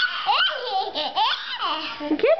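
Young child laughing in several high-pitched bursts that swoop up and down in pitch.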